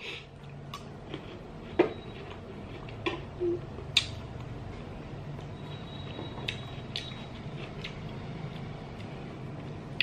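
Quiet chewing of a crisp pickled star gooseberry, with a few faint sharp crunches and mouth clicks, the clearest about 2 s and 4 s in, over a low steady hum.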